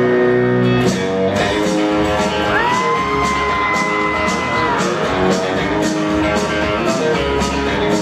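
A live country-rock band playing an instrumental passage with electric guitars and drums, steady and loud. A high note slides up about two and a half seconds in and is held for about two seconds.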